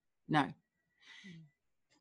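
A woman's voice says "No," and about a second later she takes a short, audible breath in before speaking again.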